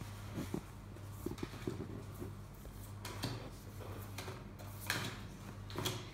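Game cards being laid one by one on a tabletop: scattered light taps and a few short sliding strokes over a steady low hum.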